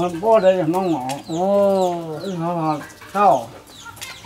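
A man talking in Hmong, his voice rising and falling from syllable to syllable, with some syllables drawn out.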